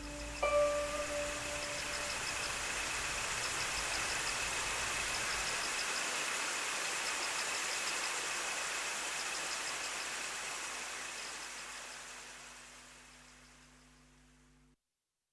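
A Chinese zither plays one last plucked note about half a second in, which rings and dies away. A steady wash of hiss-like noise with faint repeating tinkles follows, and it fades out over the last few seconds.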